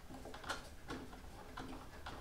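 A few faint, irregular ticks and creaks as an IKEA Lack table leg is twisted clockwise onto its screw in the underside of the tabletop.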